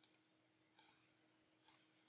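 Faint computer mouse clicks: a quick pair, another pair about a second in, then a single click, as files are right-clicked and opened.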